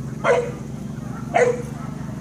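A dog barking twice during rough play: two short barks about a second apart, each dropping in pitch.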